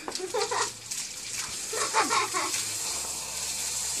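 Water from a garden hose pouring and splashing over a man's head and body, a steady spray hiss. A person's voice cuts in twice, briefly.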